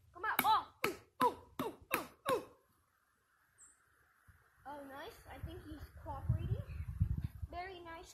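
A boy's voice in short bursts of speech, with a quiet pause of about two seconds in the middle. A low rumble sits under the later speech.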